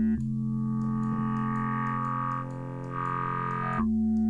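Sustained synth bass note from Ableton's Operator, played through the Moog MF-105S MuRF filter-bank plugin. Its tone changes as some of the fixed-frequency filter bands are pulled down, the way a weak graphic EQ cuts parts of the sound. It goes thinner and quieter a little past halfway, then fills out again near the end.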